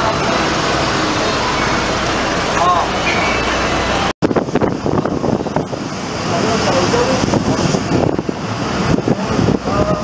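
City bus running, with engine and road noise and people talking. The sound drops out for a moment about four seconds in, at a cut, and picks up again with a choppier noise.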